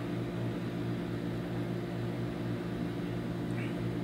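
Steady low hum of an air conditioner, a few even tones under a faint hiss.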